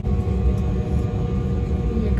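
Airliner cabin noise: a steady low engine and airflow rumble with a faint constant hum above it.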